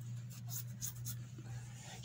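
Pause in narration: a steady low hum from the recording, with a few faint light clicks or rustles.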